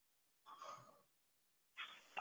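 Near silence, broken by a person's faint sigh about half a second in and a short breath just before speaking near the end.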